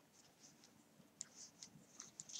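Near silence with a few faint, light ticks and scratches from a metal crochet hook working through yarn as double crochet stitches are made.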